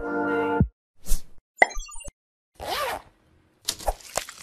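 Animated logo-intro sound effects. A sustained synth chord with a hit at its start cuts off, then comes a string of short separate effects: a pop, quick high blips, a swoosh whose pitch rises then falls, and more short whooshes near the end.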